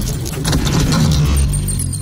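Animated logo intro sound effects: rapid metallic clattering over a deep low rumble. The clatter thins out about a second in, as a thin high ringing tone comes in.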